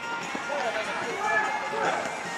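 Futsal players calling out to one another in short, indistinct shouts during play, with running footsteps and a few light knocks on the artificial turf. Faint background music runs underneath.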